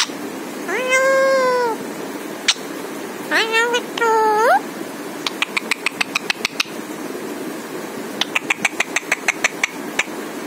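A caged green ring-necked parakeet gives a drawn-out, meow-like call about a second in, then a few shorter calls that rise at the end. These are followed by two runs of rapid clicking, about ten clicks a second, in the second half.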